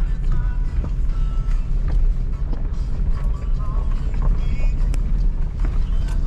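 Steady low rumble of a pickup truck driving a bumpy dirt road, heard from inside the cab, with music playing over it.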